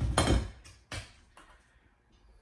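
A metal spoon scraping and knocking against a stainless steel pot as mashed potatoes are scooped out, a short clatter in the first half second and one more click about a second in.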